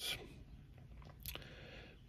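Faint steady hum of a quiet car cabin, with a brief soft click a little over a second in.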